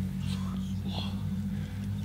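A low, steady drone with a few short breathy whispers over it, about a third of a second and a second in.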